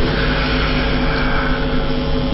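Background music bed: a steady, sustained low drone of held tones.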